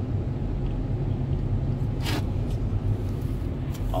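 Steady low road and engine rumble inside a moving vehicle's cabin, with a brief hiss about halfway through.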